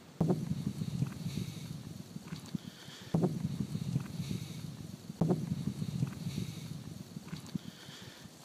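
Wind buffeting a phone's microphone outdoors, a low rumble with some handling noise, in three stretches that each start abruptly and fade away.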